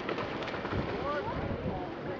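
Steady wash of wind and sea at the shore, with faint voices in the background through the middle.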